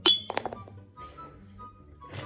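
A thrown pen hits a glass mason jar with a sharp, ringing clink, then rattles against it in three or four quick smaller clinks within about half a second.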